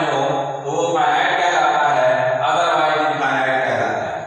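A man's voice lecturing, talking steadily in long, drawn-out phrases with a chant-like lilt, with a brief dip about half a second in.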